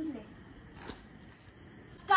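A short falling vocal sound trails off at the very start, then a quiet lull of low background noise with one faint click about a second in.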